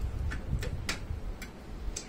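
Mouth sounds of eating: chewing and lip-smacking, with about five sharp, wet clicks spread over two seconds.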